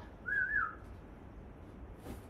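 A short whistle-like note, about half a second long near the start, rising and then dipping in pitch.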